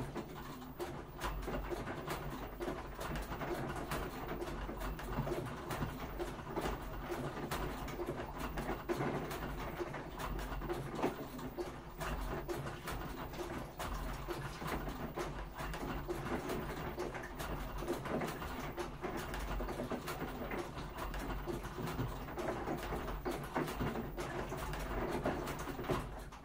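Washing machine running, its drum turning with a steady low hum under a dense patter of small clicks and knocks.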